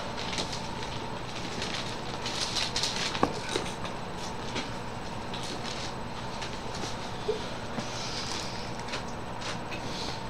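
Steady background hiss with a faint constant hum, broken by scattered soft rustles and light clicks of handling.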